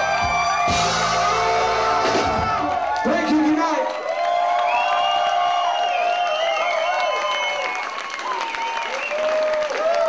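A funk band with horns, keyboards and drum kit plays the last bars of a song, and the drums and bass stop about three and a half seconds in. After that come held, bending vocal calls and a crowd cheering and whooping.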